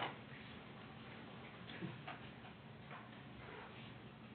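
Faint, irregular clicks and taps from a computer keyboard being used, a few scattered strokes over quiet room tone.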